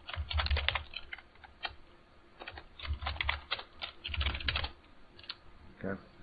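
Typing on a computer keyboard: several quick bursts of keystrokes with short pauses between them.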